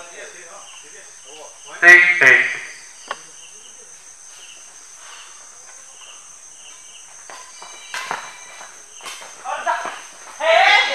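Badminton racket strikes on a shuttlecock during a doubles rally: short sharp clicks about three seconds in and twice near the end. A man shouts briefly about two seconds in, and faint cricket chirping runs underneath.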